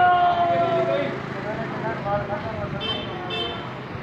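Street noise with voices: a loud, slightly falling held tone at the start, then two short high-pitched vehicle horn beeps about three seconds in.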